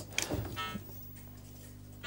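A few faint clicks and knocks as a small metal chart-recorder unit is handled and lifted out of a cardboard box, then only a low steady hum.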